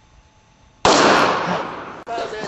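A single loud gunshot about a second in, its report trailing off over about a second.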